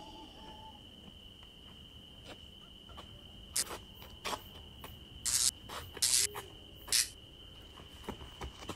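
Crickets trilling steadily at one high pitch through a night scene, broken by a run of short, loud hissing bursts from about three and a half to seven seconds in.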